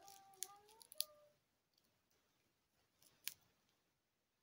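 Faint handling of plastic glow sticks: a brief squeaky creak in the first second, then a few sharp clicks, the loudest about three seconds in.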